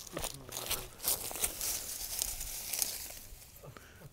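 Boots walking through long pasture grass, a run of irregular swishing, crunching steps with rustling of the grass as the shed antler is reached and lifted, dying away about three seconds in.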